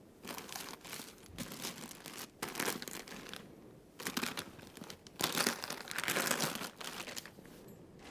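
Close, irregular rustling and crinkling of bedding and clothing rubbing against a body-worn microphone, loudest about five to six and a half seconds in.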